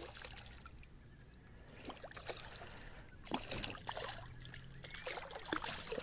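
Faint splashes and trickling water beside a kayak as a hooked bass is brought in, with a few light knocks, a little busier in the second half.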